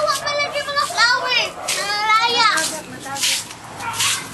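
High-pitched voices of young people calling out and squealing at play, with a run of rising-and-falling squeals between about one and two and a half seconds in.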